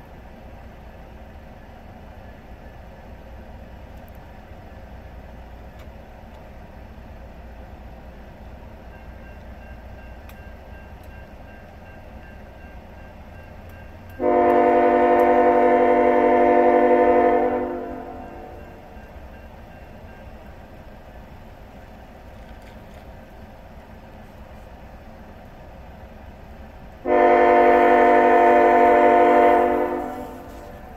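Diesel freight locomotive's air horn sounding two long blasts about 13 seconds apart, each about three seconds, from a GE ET44AC leading a train that is starting up to depart. A low steady rumble runs underneath.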